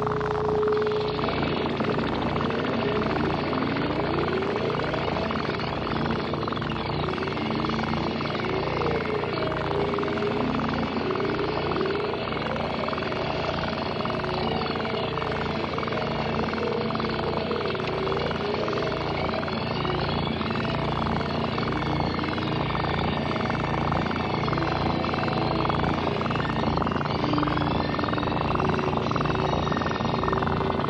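Experimental electronic music: sound fed through a Yamaha CS-5 synthesizer's filter, wobbled by a fast, regular LFO sweep about three times a second over a steady low drone, with slower tones gliding up and down through it.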